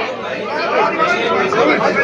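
Several people talking at once, voices overlapping in a heated exchange.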